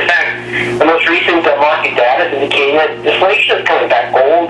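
Speech only: a man talking steadily in an interview, with a steady low hum beneath his voice.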